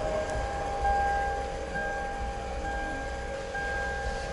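Steady electronic chime tones, pulsing about once a second, over a low hum.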